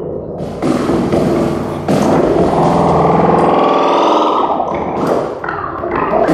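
Abstract electronic music from a patch-cable modular synthesizer: dense noisy textures that switch off and on abruptly, with a held buzzing pitched tone from about two seconds in to past the middle.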